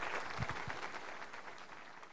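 Audience applauding, fading out.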